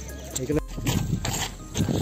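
A man's loud wordless yelling, getting louder near the end.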